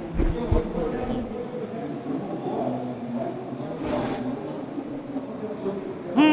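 Background noise of a large convention hall, with a faint crowd murmur, and one short breathy puff about four seconds in.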